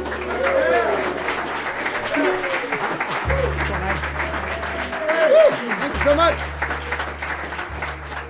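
Audience applauding, with several whoops and cheers rising out of the clapping.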